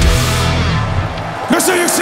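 A live metal band's final hit and chord ringing out and fading, then an audience breaking into cheers and whoops about one and a half seconds in.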